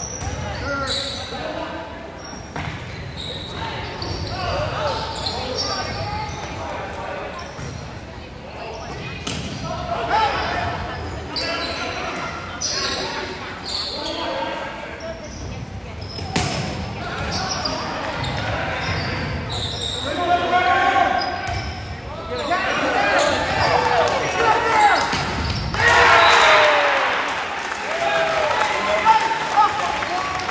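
An indoor volleyball rally: the ball is struck and hit again and again in an echoing gym, amid shouts from players and spectators. The shouting swells near the end as the point finishes.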